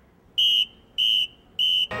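Three short, high-pitched beeps at a steady pace, about one every 0.6 seconds.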